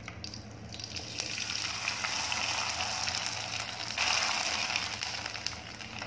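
A sun-dried tapioca (sago) papad frying in hot oil in a wok, sizzling and crackling as it puffs up. The sizzle builds about a second in, is loudest about four seconds in, then eases.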